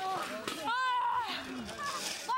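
High-pitched voices shouting and calling out in short bursts, with no clear words.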